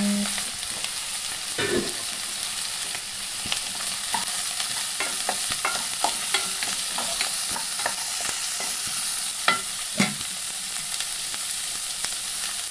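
Sliced shallots frying in hot oil in a nonstick wok, a steady sizzle, while a wooden spatula stirs them, scraping and tapping against the pan. A few louder knocks stand out, one about two seconds in and two near the end.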